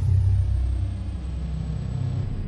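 Deep, steady low rumble of an intro sound effect accompanying an animated channel-logo sting.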